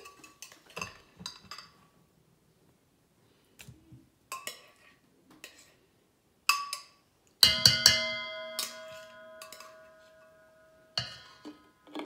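Light clinks and taps of a glass measuring cup and spatula against a stainless steel mixing bowl as pumpkin is poured and scraped in. About seven seconds in, a sharp knock of the cup against the bowl leaves a clear, bell-like ringing tone that fades away over about three seconds.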